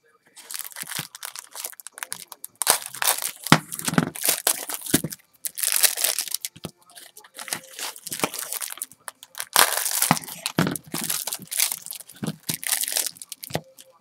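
Plastic wrapping of a 1986 Fleer baseball card rack pack crinkling and tearing as it is pulled open by hand and the wax packs are worked free, in irregular bursts of crackling with short pauses.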